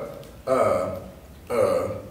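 A man's voice making two short, drawn-out, unclear utterances, one about half a second in and one about a second and a half in, as he says words half aloud while writing on the blackboard.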